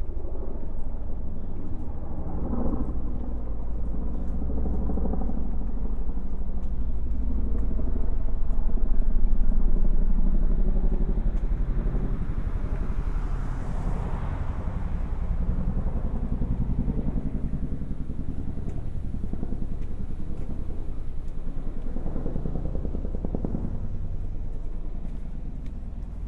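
Quiet street ambience with a steady low rumble of traffic. A motor vehicle passes, growing louder and then fading, about a third of the way in, and a smaller swell comes near the end.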